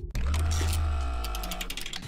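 Electronic transition sting: a deep bass hit with several steady tones layered over it, fading out over about two seconds, with a run of quick high ticks near the end.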